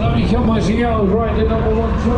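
A voice talking, its pitch rising and falling, over a steady low rumble.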